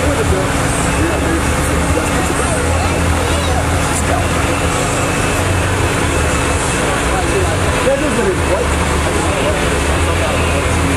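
Nissan 350Z's V6 engine idling steadily as the car creeps forward at walking pace, with indistinct crowd chatter over it.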